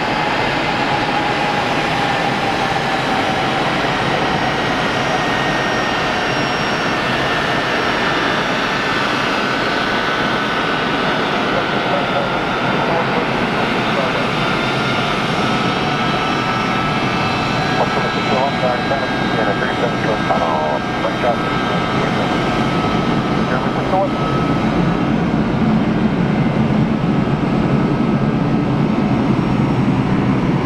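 The four Pratt & Whitney F117 turbofans of a CC-177 (C-17) Globemaster III running at low taxi power: a steady, loud jet whine. A whine tone slides down in pitch over the first several seconds, and the low rumble grows louder in the last few seconds as the aircraft taxis past.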